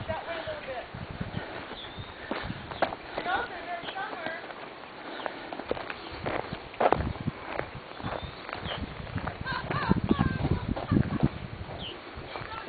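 Footsteps on a dirt road, an irregular run of scuffs and knocks, the heaviest a little past the middle and again near the end.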